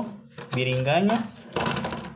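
A person's voice in short phrases, followed near the end by a brief noisy rush of sound.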